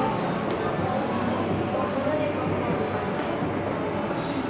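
Shopping-mall hubbub: indistinct voices over a steady rumbling background, with faint music.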